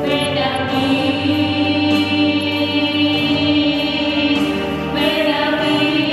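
Choir singing slow music in long held chords, moving to new chords about a quarter second in and again near the end.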